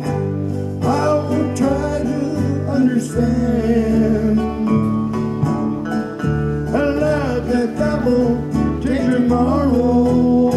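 Live country band playing: acoustic and electric guitars and an electric bass, with a steady bass line under a lead melody that slides up and down in pitch.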